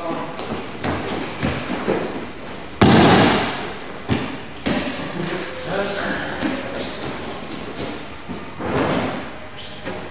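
Thumps of aikido practitioners landing on the dojo mat in throws and break-falls, several in all, the loudest about three seconds in, with voices heard in the hall.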